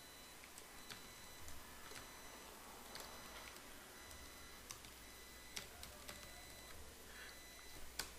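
Faint, scattered clicks of a computer keyboard being typed on, a few keystrokes spread irregularly over quiet room tone.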